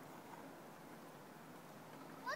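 Near silence: a faint, steady background hiss with no distinct sound events.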